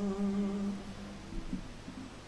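A man's voice holding the last note of a sung verse, a steady low note that dies away within the first second and leaves faint room sound.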